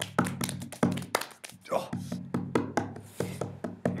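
A rapid run of sharp smacks from a staged hand-to-hand fight, about four or five a second, over music with a pulsing low bass. A short pained "oh" cry comes near the middle.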